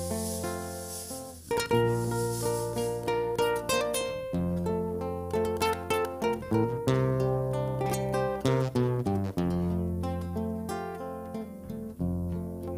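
Acoustic-electric nylon-string guitars picking a melodic instrumental introduction, with long low bass notes held underneath and changing with the chords.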